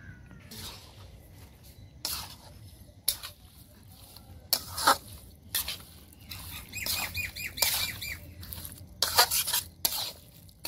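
A metal spoon scrapes and knocks against an iron kadai as raw pork pieces are tossed with spices and oil, in irregular strokes. There is a run of quick high squeaks about seven seconds in.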